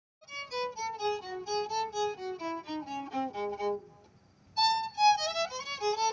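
Solo violin playing a slow melody: a bowed phrase that steps downward note by note, a brief pause about four seconds in, then a new phrase beginning higher.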